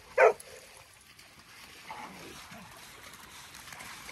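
A dog barks once, a single short, sharp bark just after the start.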